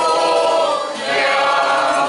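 A mixed group of voices singing a folk song together, accompanied by a street band of guitars and other plucked string instruments. The singers hold a long note, ease off briefly about a second in, then start the next phrase.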